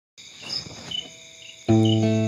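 High, steady cricket-like chirping, then about one and a half seconds in a loud guitar note rings out as the music begins.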